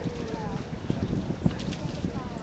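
Wind buffeting the microphone over outdoor street noise, with faint voices in the background.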